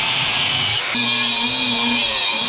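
Angle grinder with a thin cutting disc cutting through flat steel bar stock, a steady high-pitched grinding hiss; the sound shifts about a second in as the cut continues.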